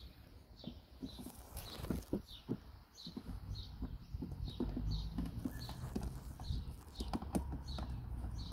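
Puppies moving about on concrete, making scattered light clicks and taps of claws and mouthing. Behind them a short high chirp repeats about every half second.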